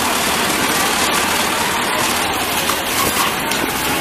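Steady, loud machine din of a garment factory sewing floor: many industrial sewing machines running at once in a continuous drone.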